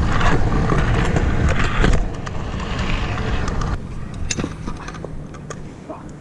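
Stunt kick scooter's wheels rolling over pavement, with wind rumbling on the microphone; the noise drops after about two seconds, and a few sharp clicks come near the end.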